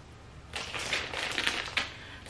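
Clear soft-plastic packaging crinkling and rustling as it is handled, a dense crackle of small clicks starting about half a second in and lasting over a second.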